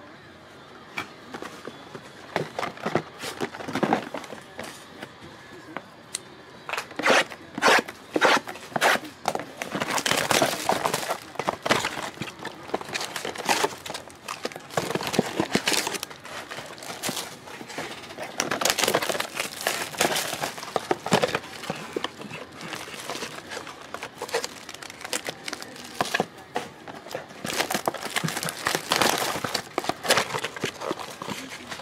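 Plastic wrapping on a 2021-22 O-Pee-Chee Platinum hockey blaster box and its card packs crinkling and tearing as they are opened by hand, in irregular bursts.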